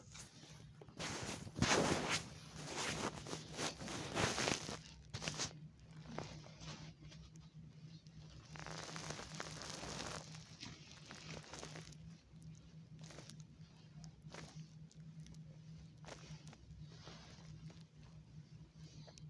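Rustling and crinkling of an adult disposable diaper and bedding being handled during a diaper change, in loud bursts over the first few seconds and again in the middle, with scattered clicks. A steady low hum runs underneath.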